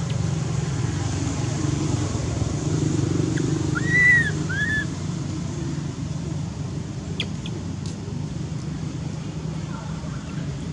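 Steady low outdoor rumble with two short, arched, whistle-like animal calls about four seconds in, the second one shorter, and a few faint sharp clicks a few seconds later.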